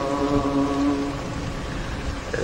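A voice holds the last note of a sung line of an Arabic Coptic Orthodox hymn, steady and then fading out just over a second in, over a low steady rumble.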